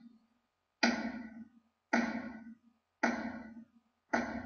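Drum-hit sound effects: three heavy hits about a second apart, each striking sharply and dying away over about half a second with a low note under it. Each hit marks a title flying in.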